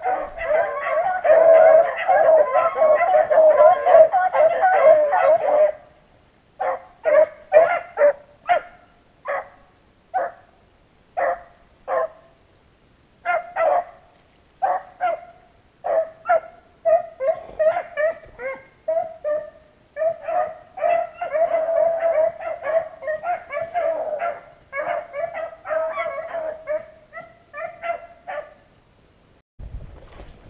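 A pack of rabbit-hunting hounds baying, typical of hounds running a rabbit's scent trail. Several dogs give voice together for the first few seconds, then single short bays follow about one or two a second, thickening into a chorus again in the second half and stopping shortly before the end.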